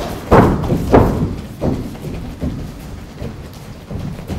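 Thuds of strikes landing in an MMA bout, a kick among them: two loud thuds in the first second, then a few fainter ones.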